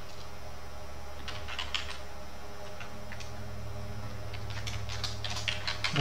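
Computer keyboard being typed on in two short runs of keystrokes, one about a second in and one near the end, over a steady low hum.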